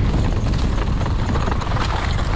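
Wind buffeting the action camera's microphone as a downhill mountain bike descends at speed, over tyre rumble on a dirt trail and a steady clatter of rattles as the bike runs over rough ground.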